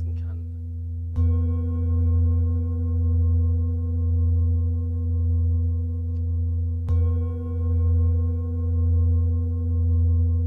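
Large Tibetan singing bowl resting on a person's back, struck twice with a felt mallet, about a second in and again near seven seconds. Each strike rings on in a deep, long hum that swells and fades slowly about once a second.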